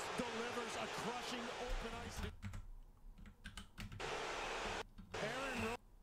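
Faint talking low in the mix, with a few light clicks and a low hum in the quieter middle stretch.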